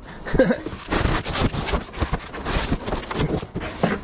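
Handling noise: rustling and scraping of a cardboard box, with a quick run of small knocks and clatter as a small CRT television is lifted out and carried.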